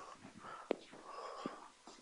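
Faint chalk writing on a blackboard: soft scratchy strokes with two sharp taps, about two-thirds of a second and a second and a half in.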